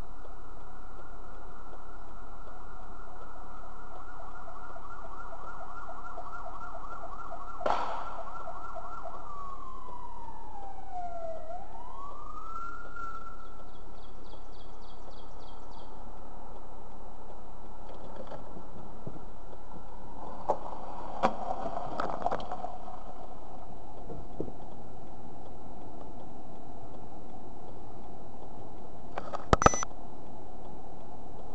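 Emergency vehicle siren wailing: a held, warbling tone that slides down in pitch and climbs back up about halfway through. A few sharp knocks come through, the loudest just before the end.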